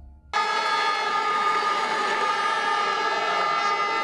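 A loud, steady, horn-like tone with several pitches held together. It starts abruptly just after the start and holds unchanged.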